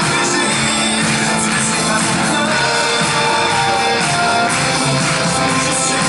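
Live pop-rock band with a male lead singer singing a slow, held melody over drums and other instruments.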